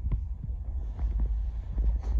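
Low rumble with a few soft thuds: handling noise on a handheld phone microphone being carried and turned.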